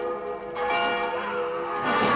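A large church tower bell tolling. A stroke struck just before rings on, and a fresh stroke lands about half a second in, its tone hanging on after it.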